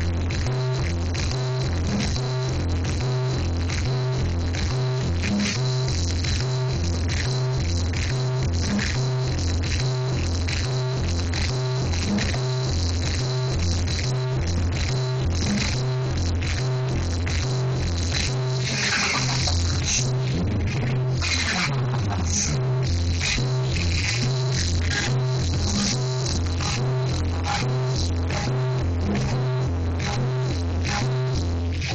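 Loud electronic dance music from a DJ's sound system, driven by a heavy bass kick about twice a second, with a brighter hissing sweep about two-thirds of the way through.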